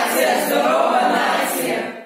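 A group of teenagers singing a short line together in unison, unaccompanied, stopping near the end.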